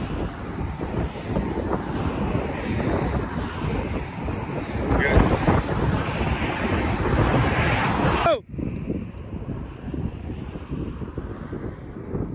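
Wind buffeting the microphone, a loud rough rumbling noise that fluctuates and drops off suddenly about eight seconds in, then carries on more weakly.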